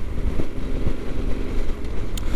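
Yamaha XT1200Z Super Ténéré's parallel-twin engine running at a steady motorway cruise, under a constant low rumble of wind and road noise.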